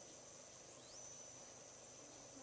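Faint steady hiss with thin high-pitched tones, one of which slides upward a little before a second in; no distinct event, only the low background noise of the recording.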